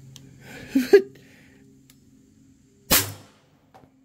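Single shot from a short-barreled VKS air launcher running on a high-pressure air tank: one sharp crack of released air about three seconds in, dying away quickly, then a faint click. It is a test shot over a chronograph after a regulator swap, and the chronograph then reads 356 feet per second.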